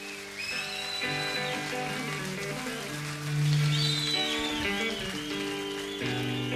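Live concert recording of an electric guitar playing sustained notes as the song begins, over audience noise with whistles that rise and fall.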